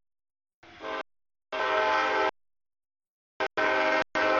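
CSX freight locomotive's air horn sounding a sequence of blasts as it approaches a grade crossing: a shorter blast, then a long one, a very brief toot about three and a half seconds in, and another long blast near the end.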